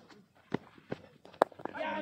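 Footsteps on a dirt cricket ground, a few short sharp steps about 0.4 s apart, with one louder sharp knock about one and a half seconds in.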